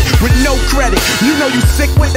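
Rap verse over a hip hop beat with a deep, sustained bass line.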